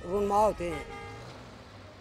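A man's voice ends a sentence in the first moment, followed by faint road-traffic noise with a faint steady horn tone.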